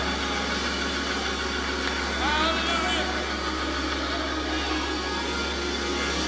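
A church organ holding a steady low note, with a voice calling out over it about two seconds in and other voices of the congregation faintly around it.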